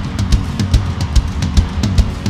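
Live gospel band playing an upbeat instrumental groove: a drum kit with a steady bass drum about two and a half beats a second and fast hi-hat ticks, over a bass line.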